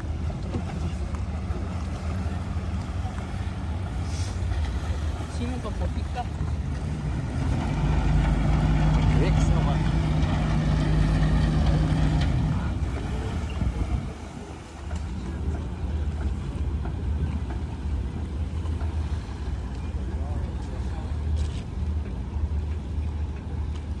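Boat engines running with a steady low hum, growing louder with a strong steady tone for a few seconds near the middle, then easing back.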